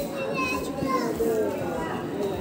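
Indistinct background voices in a shop, with high-pitched children's voices calling and chattering.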